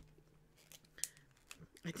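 A few faint, sharp clicks and taps of small objects handled on a tabletop, spread over the second half.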